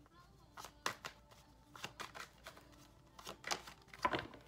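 A tarot deck shuffled by hand: soft, irregular card clicks and slaps, a few a second, with louder snaps about a second in and shortly before the end.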